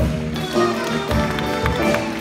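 Jazz big band playing: saxophones, trumpets and trombones sounding held chords over a steady low beat about twice a second, with light cymbal-like ticks.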